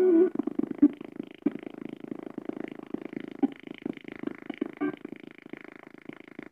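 TG113 Bluetooth speaker played loud, its sound breaking up into a rapid, stuttering, chopped buzz after a brief loud note at the start. This is its fault: at high volume the sound cuts in and out.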